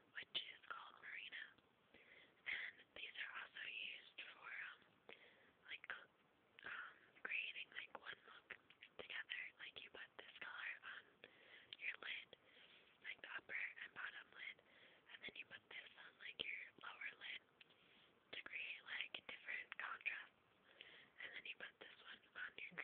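A person whispering, faint and breathy, in short phrases throughout, with scattered small clicks.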